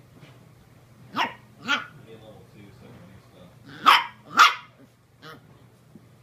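Puppy barking: four short, high yaps in two pairs about half a second apart, the second pair louder, then one faint yap.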